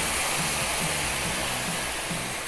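Cognac poured into a hot sauté pan of onions, green peppers and garlic, sizzling with a steady hiss as the liquid hits the hot pan.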